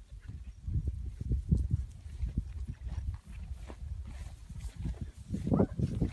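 Yearling cattle, one giving a short rising bawl about five and a half seconds in, over a low, uneven rumble with scattered knocks.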